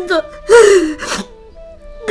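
A woman sobbing: the end of a wailing cry at the start, then a loud, breathy sob with a falling wail about half a second in.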